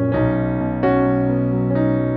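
Calm, slow piano music: soft notes and chords struck about once a second, each ringing on over the next.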